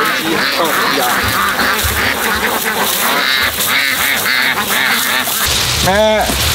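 Ducks quacking over and over in quick succession, with one louder quack at the very end.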